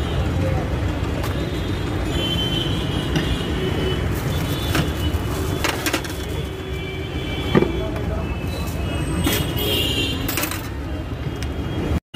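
Busy street ambience: a steady rumble of road traffic with indistinct voices in the background and a few short sharp clicks and rustles.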